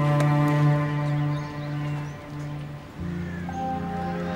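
Background score of held low notes, dipping softer just before a new chord enters about three seconds in.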